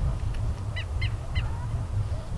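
A bird gives three short calls in quick succession, about a third of a second apart, over a steady low rumble.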